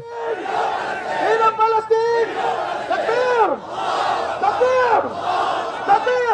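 A protest crowd chanting and shouting slogans, with a man's voice leading through a microphone. From about three seconds in, loud shouted calls rise and fall about every second and a half.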